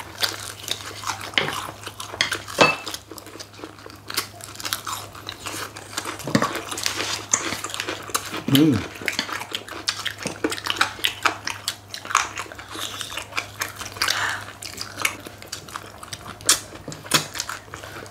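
Close-up eating sounds: crispy, thin-battered fried chicken wings crunching and being chewed, with chopsticks clicking against dishes, as a run of many short sharp crackles and clicks.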